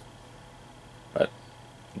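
Quiet room tone with a faint steady hum, broken about a second in by a single short spoken word.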